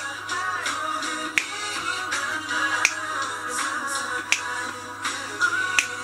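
K-pop Christmas song playing, with sharp finger snaps on the beat, about one every three quarters of a second.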